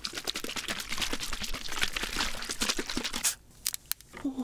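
Plastic makgeolli bottle being opened: the cap is loosened and the carbonated rice wine fizzes and crackles for about three seconds as the gas escapes. A few sharp clicks follow near the end.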